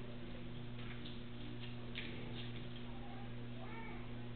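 Steady electrical mains hum from the hall's sound system, with a few faint clicks around the middle and a faint voice near the end.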